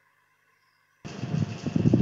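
Near silence for about a second, then an open microphone cuts in abruptly, bringing a steady hiss of room noise and the first low sounds of a voice.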